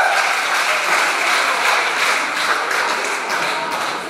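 A group of people applauding with a steady, dense patter of clapping at the end of a dance routine.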